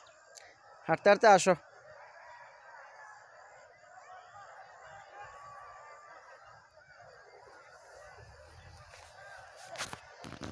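A short run of loud bird calls about a second in, then faint, continuous chatter of many birds.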